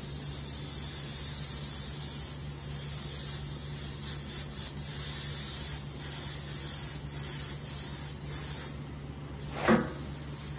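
Small compressed-air spray gun hissing steadily as it sprays gold mica-powder paint. The spray stops briefly near the end, followed by one short, louder sound.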